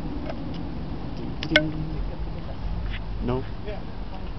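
Steady low rumble of outdoor background noise, with a single sharp click about one and a half seconds in and a short spoken word near the end.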